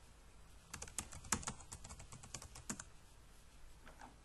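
Typing on a computer keyboard: a quick run of keystrokes from about a second in, stopping before the three-second mark.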